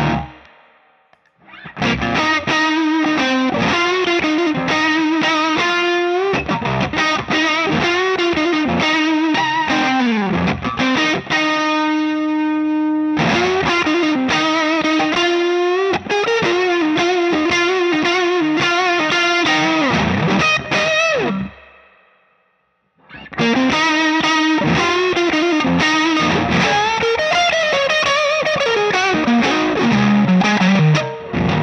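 Overdriven electric guitar riffs played on a Suhr T-style guitar through a Cornerstone Gladio overdrive pedal, with its clean knob rolled in. A chord rings out held for a couple of seconds near the middle, and the playing stops briefly twice.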